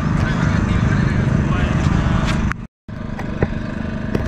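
A car engine idling steadily, broken by a brief silent gap about two-thirds of the way through.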